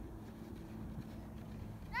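Faint outdoor background noise with a weak low hum, no distinct event. A high-pitched voice breaks in at the very end.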